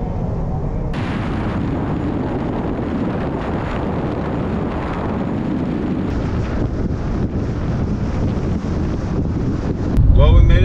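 Steady road and wind noise from a car driving on the highway, with wind rushing over the microphone; the hiss grows brighter about a second in.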